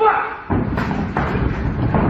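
Dull thuds of strikes and footwork on a ring canvas as two fighters exchange blows, with a man's voice shouting at the very start.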